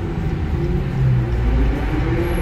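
Low engine rumble of a Dodge Charger SRT Hellcat's supercharged V8, heard inside the cabin as the car rolls slowly to a stop in traffic. The rumble grows deeper and louder about a second in.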